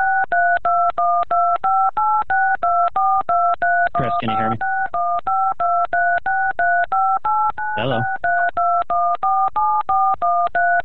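Telephone keypad touch-tone (DTMF) beeps: a rapid, unbroken string of button presses at about four a second, each a short two-note tone, sent down a phone line.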